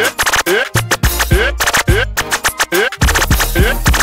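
Software DJ scratching in Virtual DJ 8, worked from a laptop keyboard: short upward scratch sweeps repeat several times a second, chopped by abrupt cuts, over a song with a deep bass line.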